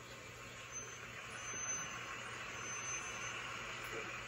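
Faint, steady rushing vehicle noise from the opening outdoor scene of a music video, heard through a laptop speaker and slowly growing louder.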